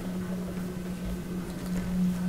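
Room tone: a steady low hum, with a few faint small ticks near the end.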